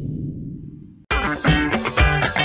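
A low rumble from the countdown's boom effect dies away. About a second in, channel intro music with a beat starts abruptly.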